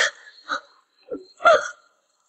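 A person's voice making four short, hiccup-like vocal catches in quick succession, with brief silences between them.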